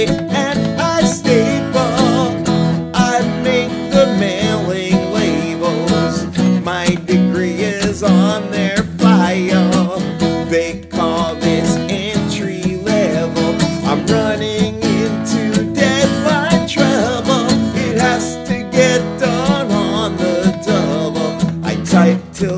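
A man singing over a strummed acoustic guitar.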